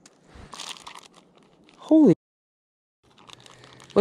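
Crinkling and rustling of a plastic zip-lock bag with a paper logbook inside, handled as it is drawn out of a clip-lid plastic container. A brief murmured voice sounds about two seconds in, then the sound drops out completely for about a second before faint crinkling resumes.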